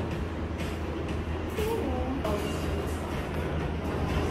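A steady low hum, with a few faint voices or music notes about halfway through.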